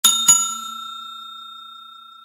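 Bell ding sound effect for a notification bell: a bright bell struck twice in quick succession, then ringing on and fading slowly.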